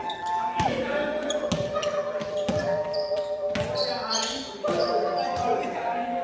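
A basketball bouncing on a hardwood gym floor about once a second, with short sneaker squeaks, echoing in a large hall. A steady held tone sounds underneath, changing pitch twice.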